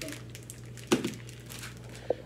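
Light rustling and small clicks over a steady low hum, with one sharp knock about a second in.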